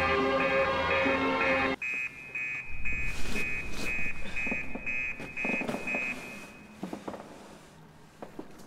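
Music cuts off sharply about two seconds in, leaving a high electronic alarm-clock beep repeating about twice a second, which stops about six seconds in. Soft rustling of bedding follows near the end.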